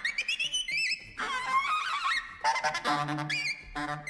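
Saxophone-led jazz music with bending, sliding melody notes.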